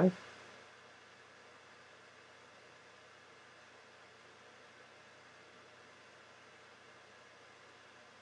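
Near silence: faint steady room tone, an even hiss with a low hum under it, after the last word of speech ends at the very start.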